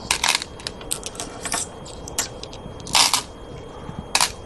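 Go stones clicking and rattling against each other and the wooden board as a handful is cleared off the board. There are a series of sharp clicks, with a longer rattle just before three seconds in.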